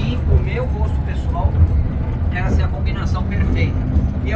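A Volkswagen Beetle's engine running, heard as a steady low rumble from inside the cabin, with brief fragments of a man's voice over it.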